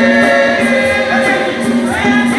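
A women's church choir singing a hymn in harmony, with one strong lead voice close by.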